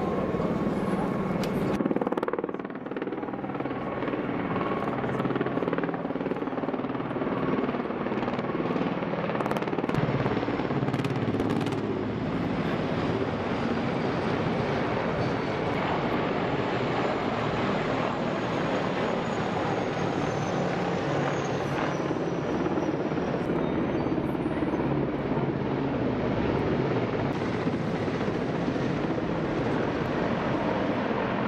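Formations of Russian military helicopters (Mi-8 transports, Ka-52 and Mi-28 attack helicopters) flying low overhead. The blade chop and turbine noise is steady, and a faint high turbine whine falls slowly in pitch around the middle as a group passes.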